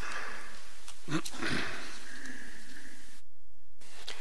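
A pause in a recorded talk: steady room hiss, with a faint short vocal sound about a second in.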